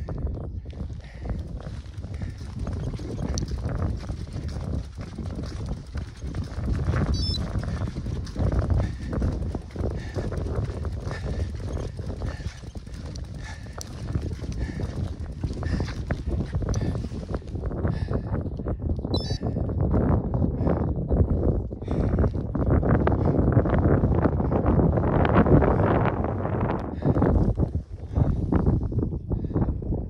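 Wind buffeting the camera's microphone in gusts, a low rumbling flutter that grows stronger in the second half.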